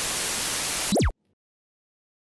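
TV static sound effect: a burst of hiss that ends about a second in with a quick falling sweep, then cuts off.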